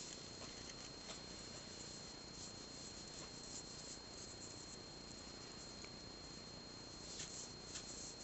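Faint soft rustling of yarn with a few light ticks as a crochet hook works stitches, over low room hiss with a thin steady high tone.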